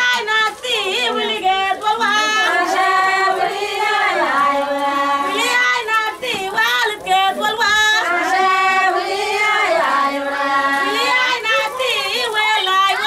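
A group of women singing together without instruments, high voices holding long, bending notes in phrases of a few seconds with brief breaks between them.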